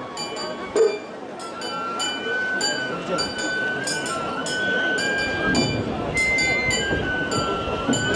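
Metal rings and ornaments on a large portable shrine (mikoshi) jingling in a steady rhythm, about two jangles a second, as the shrine is bounced by its carriers. A high flute melody and crowd voices run underneath.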